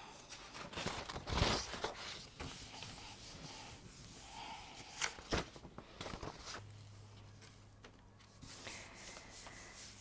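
Hands rubbing and smoothing a sheet of paper pressed onto a gel printing plate to lift the print: soft, uneven paper rustling, with a louder rustle a second or so in and a sharp tap near the middle.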